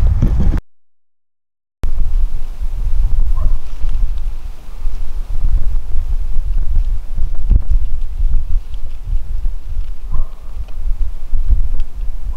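Wind buffeting the camera's microphone: a loud, gusting low rumble that starts after a second of dead silence.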